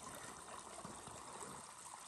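Faint, steady trickle of a small spring-fed creek.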